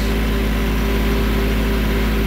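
Compact tractor engine running steadily, heard from the operator's seat, with an even, unchanging engine note.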